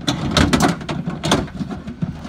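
Replacement window regulator knocking and scraping against the sheet-metal inner panel of a Chevy Silverado door as it is slid into the door cavity: an uneven run of sharp clanks and rattles.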